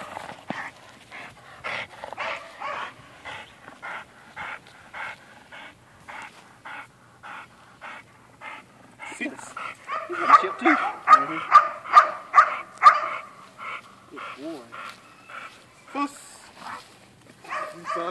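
White bulldog-type dog barking at a decoy in a padded bite suit during protection training. Softer repeated barks come through the first half, then a loud, fast, regular run of barks, about three a second, for a few seconds past the middle.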